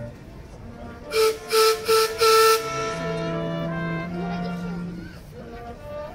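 Orchestral music with brass and woodwinds, cut across about a second in by four loud toots of a boat's horn, three short and a longer fourth.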